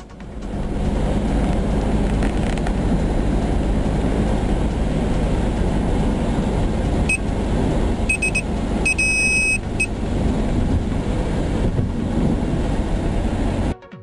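Steady low rumble of road and engine noise inside a moving car's cabin. About seven seconds in, an electronic alarm gives several short high-pitched beeps, then a longer one. This is a Nap Zapper anti-sleep ear alarm, which beeps when the driver's head tips forward from drowsiness.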